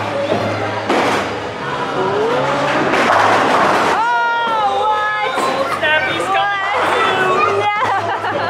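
Bowling ball rolling down a wooden lane toward the pins, a noisy rumble that builds over the first few seconds. From about halfway through, voices call out over background music with a bass line.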